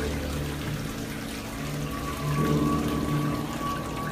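A toilet flushing, water rushing and swirling in the bowl, under background music with sustained low notes.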